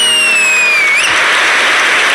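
Studio audience applauding and cheering. A long, high whistle slides slightly down in pitch over the first second, then the clapping carries on alone.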